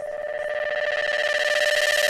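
Trance music in a breakdown with no drums: a held synthesizer tone with a fast, even flutter, growing steadily louder.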